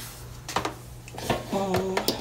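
A few light clicks and clatters from the air fryer's non-stick basket and wire rack being handled, over a steady low hum. A woman's voice starts near the end.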